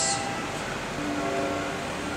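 Sustained keyboard chord with held, organ-like notes, moving to a lower chord about a second in.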